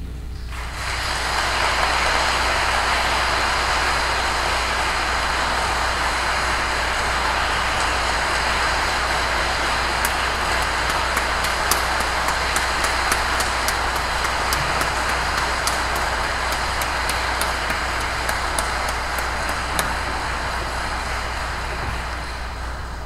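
Congregation applauding steadily, the clapping starting within the first second and easing slightly near the end.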